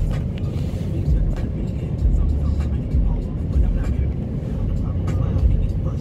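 Automatic car wash machinery running, heard from inside the car's cabin: a loud, uneven low rumble with water spray and irregular knocks against the car.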